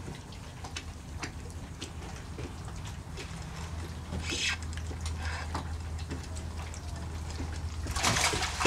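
Water lapping and trickling around a kayak and dock pilings, with scattered small ticks and light splashes, as a hooked fish is reeled toward the boat. A steady low hum runs beneath, growing stronger from about halfway.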